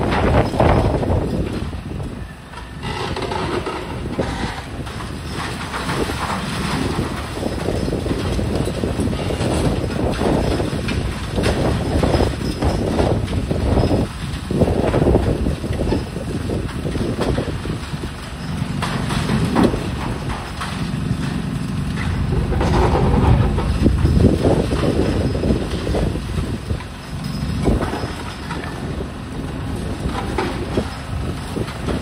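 Demolition excavator with a hydraulic crusher jaw breaking up a concrete floor slab: the diesel engine and hydraulics run under load, with irregular crunching and clattering of concrete and rubble falling.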